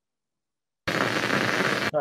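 Microelectrode recording from deep-brain neurons played through a speaker: a loud crackling hiss like white noise, the sound of live neurons firing. It starts abruptly about a second in and cuts off just before the end.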